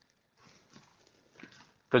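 Near silence with faint room hiss during a pause in a man's talk; his voice starts again near the end.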